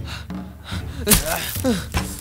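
A man gasping and groaning in short falling cries, with a sudden sharp hit about halfway through, the loudest moment.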